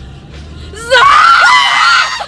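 A young woman's loud, high-pitched excited scream. It starts about a second in and lasts about a second.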